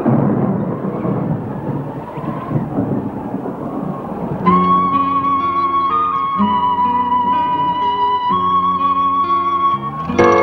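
Rolling thunder for the first four seconds or so. Then soundtrack music comes in: a high, held melody over sustained chords.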